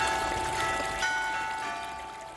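Short closing jingle of bell-like chime notes, a few notes struck about half a second apart over a sustained ringing tone, the whole fading out.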